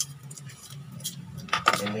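Light clicks and rattles of an extension cord's plastic plug and rubber socket being handled, over a steady low hum.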